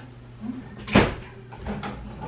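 A single solid wooden thump about a second in, with a few fainter knocks after it: furniture being carried and set down.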